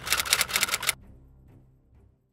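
Typewriter keystroke sound effect, a rapid run of clicks at about ten a second, stopping about a second in, with a faint tail fading out.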